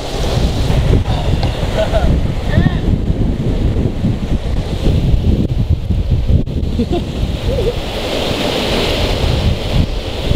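Wind buffeting the microphone, over the steady rush of a river.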